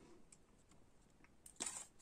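Near silence: room tone with a few faint ticks, then a brief soft noise near the end.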